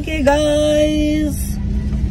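A woman's voice holding one long drawn-out syllable at a steady pitch for about a second, over the steady low rumble of a car's engine and road noise inside the cabin.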